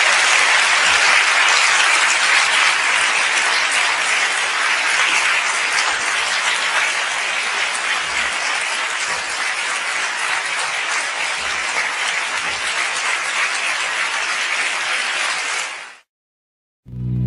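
Audience applauding, a dense steady clapping that eases off slightly over time and then cuts off abruptly near the end.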